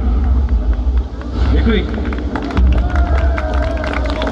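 Amplified music and a voice over an outdoor PA, as a sung phrase ends at the start, with scattered sharp clicks and a steady low rumble beneath; from about halfway, a held voice-like note sounds.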